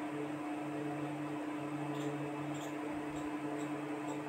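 Steady low hum over a faint hiss, with a lower part of the hum dropping in and out a few times.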